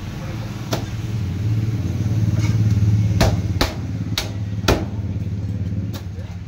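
A knife chopping into a large parrotfish on a wooden log block. There are five sharp chops: one about a second in, then four in quick succession past the middle. Under the chops a low engine hum swells and fades in the middle.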